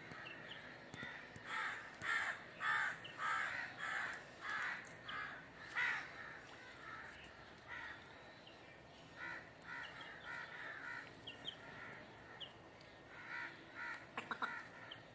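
A run of short, harsh bird calls, about two a second, loudest in the first half. Fainter runs of calls and a few short high chirps follow later.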